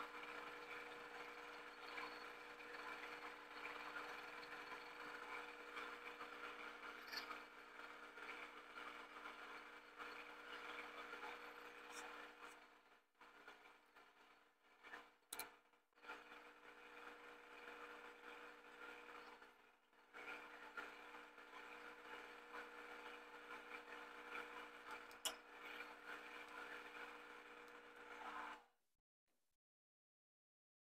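Bridgeport milling machine spindle turning a boring head through a rough cut in a hydraulic cylinder's rod eye: a faint, steady hum with a few steady tones. It drops out briefly twice in the middle and cuts off suddenly near the end.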